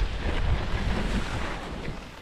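Wind rushing over the microphone and skis sliding on snow during a downhill run, a steady rushing noise that gets quieter toward the end.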